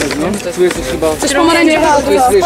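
Several young people talking at once in overlapping chatter, with no single clear voice.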